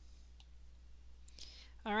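A quiet pause over a steady low hum, with a single faint click about half a second in.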